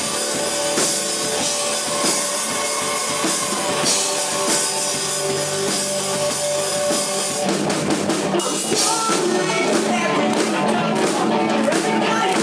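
Live rock band playing loud through a club PA: drum kit, distorted electric guitar and bass. The music moves into a new section about seven and a half seconds in.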